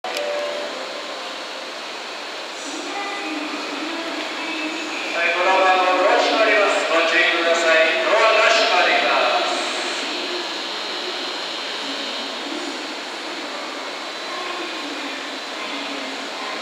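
500 series Shinkansen pulling slowly into the platform. From about five seconds in, a loud pitched warning horn sounds for around four seconds.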